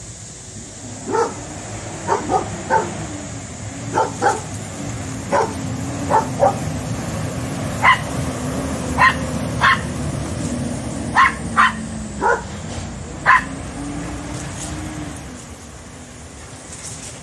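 Small rat terrier barking in short, sharp single barks, about sixteen of them at an uneven pace, some in quick pairs, as it faces off with a cat.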